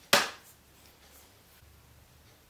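A single sharp knock just after the start, dying away quickly, then faint room tone.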